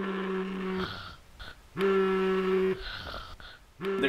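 Alarm clock buzzing: a steady low buzz of about a second, sounding three times with gaps of about a second between.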